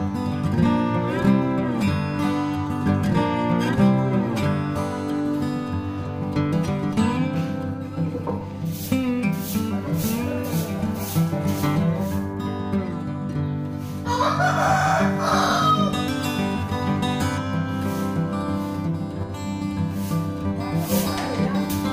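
Background guitar music plays throughout, and about two-thirds of the way in a rooster crows once, lasting about two seconds.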